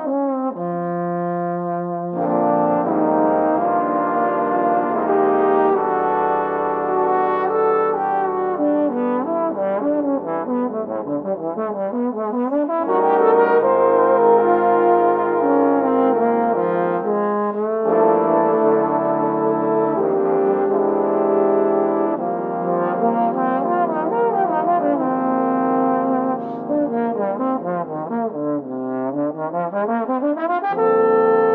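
Trombone choir playing a jazz arrangement: a solo tenor trombone carries the melody, and about two seconds in an ensemble of tenor and bass trombones joins with sustained, shifting harmony beneath it.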